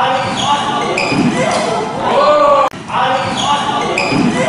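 Badminton shoes squeaking repeatedly on a wooden court floor during a fast doubles rally, in short rising-and-falling chirps, with a sharp click a little under three seconds in.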